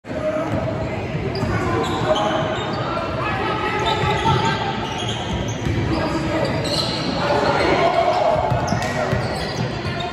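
Basketball game in a gymnasium: a ball bouncing on the hardwood court amid the voices of players and spectators, echoing in the large hall.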